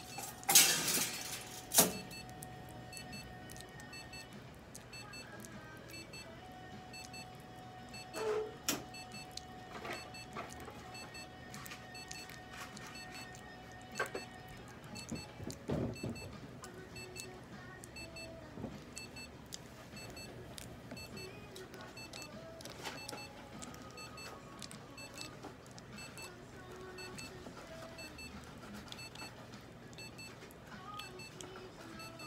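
Scattered clicks, knocks and rustles of a prairie dog being held and syringe-fed on a stainless-steel exam table, loudest in the first two seconds, over faint background music.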